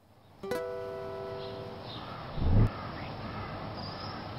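Film score: a single plucked-string chord rings out about half a second in and fades away over open-air background noise. A brief low thump, the loudest sound, comes about two and a half seconds in.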